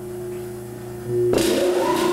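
Electric fan motor humming steadily. About a second and a half in, it spins up with a short rising whine and a rush of air, then settles into a steady run as the equipment is restarted.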